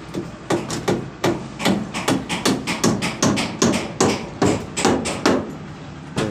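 Hammer blows in a steady rhythm, about two and a half strikes a second, each a sharp knock with a short ring after it.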